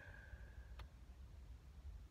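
Near silence inside a car cabin: a faint low rumble, with a single faint click a little under a second in.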